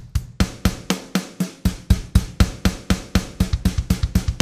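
Programmed software drum kit (Logic Pro's SoCal kit) playing a simple beat through the Note Repeater MIDI effect, every hit repeated three times on eighth notes so kick, snare and cymbal run together in a dense, even stream of about four strokes a second.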